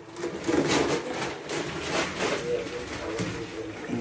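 A wooden spoon stirring chunks of apple gourd in a metal pot of frying chicken and spices, giving repeated knocks and scrapes against the pot over a low sizzle of the frying.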